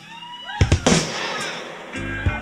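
Live audience cheering and whooping as a song ends, with two sharp cracks about half a second in and a haze of applause after them.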